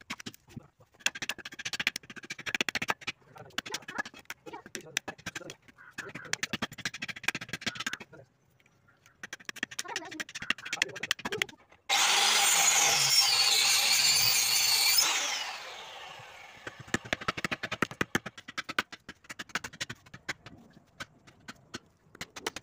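Large curved carving blade chopping into a wooden log in quick strokes, with a pause of a second or so after eight seconds. About halfway through, a handheld electric power tool runs loud and steady for about three seconds, then winds down with a falling pitch, and the blade chopping starts again.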